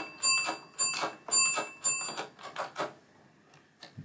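Pinball match unit on a 1972 Williams Honey being stepped round by hand, its wiper fingers clicking from position to position over the contact board: a run of sharp metallic clicks, about three a second, with a bell-like ring over the first two seconds, then a few fainter clicks near the end.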